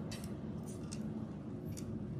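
A few faint, scattered clicks and rustles of plastic pony beads and cord being handled as the cord end is threaded through the beads.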